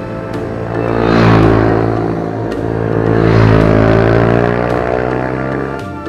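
Background music over two Ohvale minibikes riding past on track, their engine sound swelling twice, about a second in and again about three seconds in.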